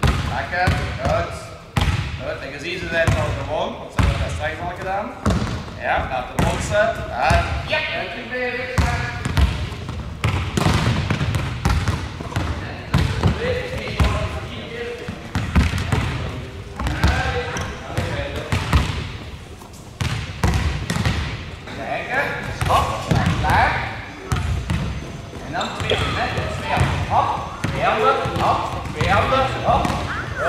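Volleyballs bouncing on a sports-hall floor and being struck by hand: many irregular thuds overlapping one another, with children's voices talking throughout.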